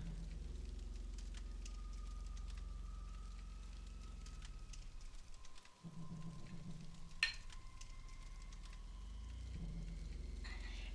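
Metal spoon stirring a thick flour-and-water paste in a glass tumbler: faint scattered clicks and scrapes, with one sharper clink about seven seconds in. Underneath runs a low steady drone whose tones slowly shift and glide.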